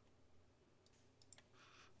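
Near silence, room tone with a few faint computer mouse clicks a little after the middle.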